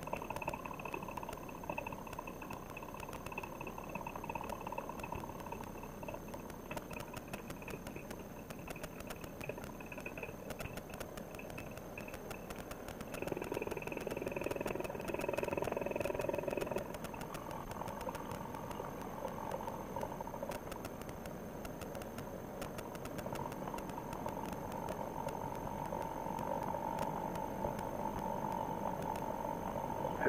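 Paramotor trike engine running steadily at reduced power, with a brief rise in power a little before halfway through.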